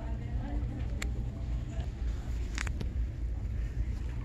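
Shop background noise: a steady low rumble with faint voices, and sharp clicks about a second in and again around two and a half seconds in.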